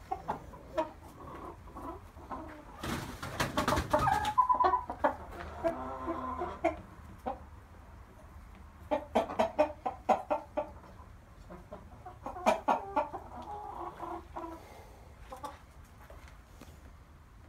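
Chicken clucking in short bursts. There is a louder, noisier stretch about three seconds in, then a longer drawn-out call, then more clusters of clucks later on.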